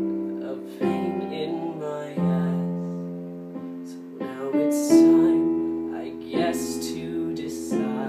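Piano chords played on a digital keyboard, each chord struck and held so that it fades before the next, roughly every one to two seconds.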